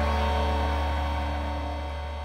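Background music dying away: a held low, droning chord that fades steadily.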